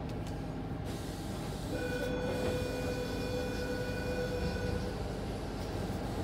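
Interior running noise of a Sydney Trains Tangara electric suburban train: a steady rumble of wheels on rail. A steady whining tone rises over it for about three seconds in the middle.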